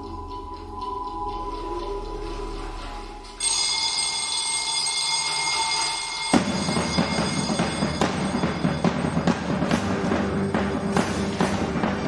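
Theatre stage music: a low sustained drone, joined about three seconds in by a high, bell-like ringing tone, then from about six seconds in fuller music with regular sharp percussive beats.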